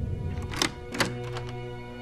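A key turning in a door lock, giving a few sharp metallic clicks about half a second and one second in, over sustained background music.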